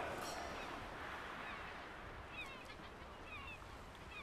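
Gulls calling faintly several times in short, falling cries, over a soft hiss that fades during the first couple of seconds.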